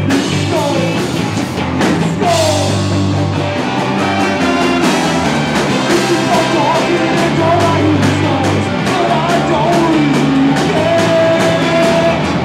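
Live ska-punk band playing a song: a horn section of trumpets, trombone and saxophone over electric guitar, bass and drums, with a long held note near the end.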